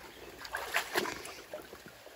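A few short splashes and knocks, clustered around the first second, over faint moving river water.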